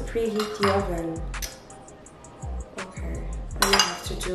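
A utensil clinking and scraping against a baking dish, a few separate clinks with a louder cluster near the end. Background music with a steady beat plays throughout.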